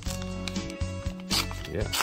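Background music over the crinkle of a foil trading-card booster pack wrapper being handled in the hand, with one sharper crinkle about a second and a half in.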